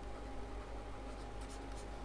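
Faint scratching and ticking of a stylus on a pen tablet as words are handwritten, over a steady electrical hum.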